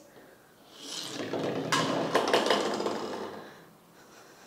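Plastic ball rolling along a wooden tabletop, starting about a second in, then knocking against toy plastic bowling pins with light clattering knocks. It is a weak roll that topples one pin.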